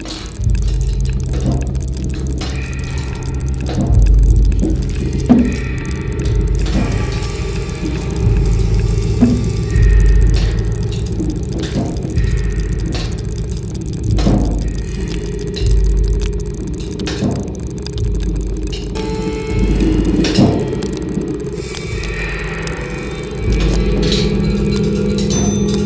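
Experimental percussive music: scattered sharp drum and cymbal strikes over deep pulsing swells that come about every two seconds, with faint held tones above.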